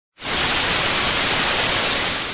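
Television static sound effect: a loud, steady hiss of white noise that starts abruptly just after the opening.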